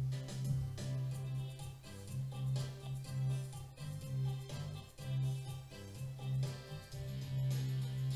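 Quiet music from a Korg Pa5x arranger keyboard: a soft style accompaniment with a repeating bass line and light upper parts, played at low volume.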